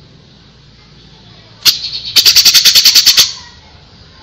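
Grey-cheeked bulbul (cucak jenggot) singing a loud, harsh rattling burst: one sharp note, then about a dozen rapid notes in about a second.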